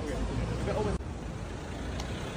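Busy city street ambience: a steady low traffic rumble with indistinct voices of passers-by, clearest in the first second.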